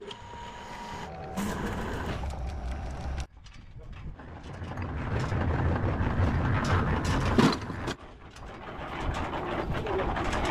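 Belt-driven electric winch hoist running, its motor humming as it winds the wire rope to lift a load of bricks. The sound breaks off about three seconds in, then builds again, with a sharp knock about seven seconds in.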